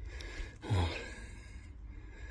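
A person's short gasped "oh" about two thirds of a second in, over a low steady rumble.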